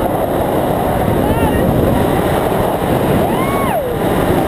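Wind buffeting the camera microphone under a tandem parachute canopy, a constant loud rumble. A person's voice calls out over it, with a rising-and-falling whoop near the end.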